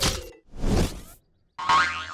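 Film-soundtrack comedy sound effects. A short beat-driven music sting cuts off, a brief whoosh follows, and after a moment's gap a pitched effect with a sliding tone begins near the end.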